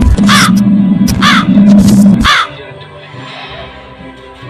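Three crow caws about a second apart over a loud, low, steady musical drone. The drone cuts off about two and a half seconds in, leaving quieter music.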